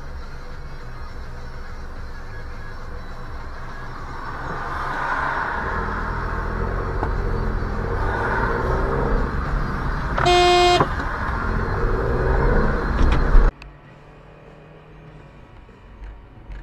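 Road and engine noise of traffic that grows louder, with one short car horn honk about ten seconds in. The noise cuts off suddenly near the end.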